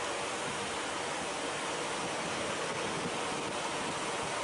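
Steady road and wind noise from a moving vehicle: an even rushing hiss with a faint steady hum.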